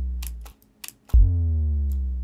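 A psytrance kick drum hits about a second in, and a synthesised sub boom follows it: a deep low tone whose pitch slides slowly down as it fades. Before it, the tail of the previous boom dies away and a few sharp mouse clicks sound.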